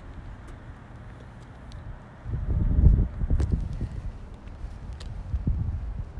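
Footsteps on asphalt with a low rumble of wind on the microphone that starts about two seconds in.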